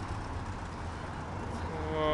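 Steady low rumble of street traffic and outdoor city background noise. Near the end a person's voice comes in with a drawn-out hesitation sound.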